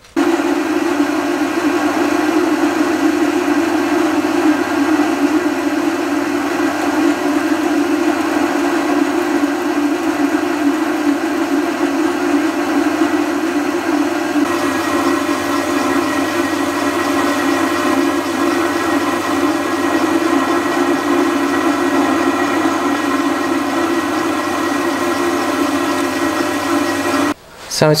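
Small metal lathe running steadily while a grooving tool cuts a set-screw groove into a spinning steel shaft. About halfway through the sound turns harsher, with a faint high whine joining in.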